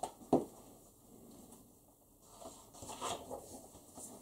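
Page of a large paperback picture book being turned by hand: a sharp tap about a third of a second in, then a soft paper rustle and scuffing that builds in the second half.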